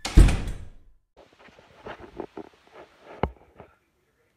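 A heavy thump right at the start that dies away within about a second, then a run of light knocks and clatter with one sharper knock about three seconds in.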